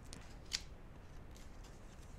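Oracle cards being handled on a table: faint slides and taps of card stock, with one sharp snap about half a second in.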